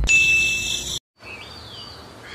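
A bright ding sound effect, with steady high ringing tones, lasting about a second and cut off abruptly. After a short gap come faint high gliding chirps, like small birds.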